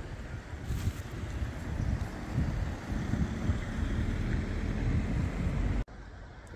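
Wind buffeting the phone's microphone: a gusty, uneven low rumble with a faint rushing haze above it, cut off suddenly near the end.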